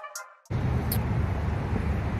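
The last of a hip-hop intro beat fades out, and about half a second in a steady low outdoor rumble starts: background noise picked up by a handheld phone microphone outdoors.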